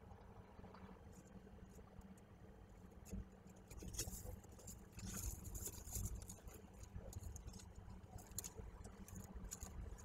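Peregrine falcon scraping and shuffling in the gravel of its nest box: irregular scratches and rustles that start about three seconds in, over a low steady rumble.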